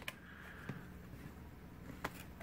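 Quiet room tone with a low steady hum and one faint click about a third of the way through.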